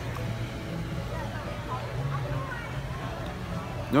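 Faint background murmur of distant voices and music over a steady low hum, with no loud sound until a man's voice at the very end.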